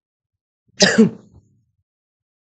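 A man clearing his throat once, a short rough burst with two quick pushes about a second in.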